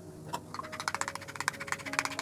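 A utensil stirring cream and ice cream base in a bowl, clicking quickly and evenly against the bowl from about a third of a second in, over soft background music.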